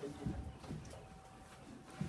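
A few soft, dull knocks in the first second, over a faint steady hum.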